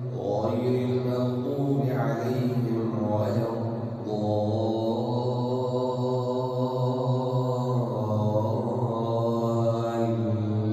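Male imam reciting the Quran aloud in a melodic chant during congregational prayer. About four seconds in he pauses briefly, then draws out one long steady note for about four seconds before the phrase moves on.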